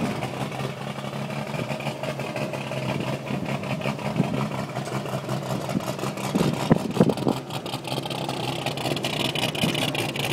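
1951 International truck engine fitted with a three-quarter race cam, idling steadily, with a brief louder moment about seven seconds in.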